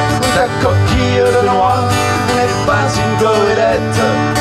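Two acoustic guitars playing a live pop-folk song, played steadily.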